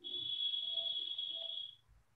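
A steady, high-pitched tone, held for nearly two seconds and then fading out.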